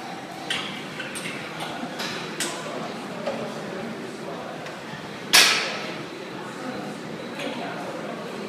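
Light metal clinks and knocks from the weight plates and frame of a plate-loaded seated calf raise machine as single-leg reps are done. One loud, ringing metal clank comes a little past five seconds in.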